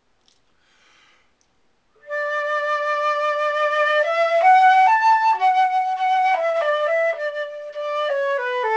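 Silver concert flute playing solo. After about two seconds of near quiet it starts a smooth phrase: a long held note, then notes stepping up and back down.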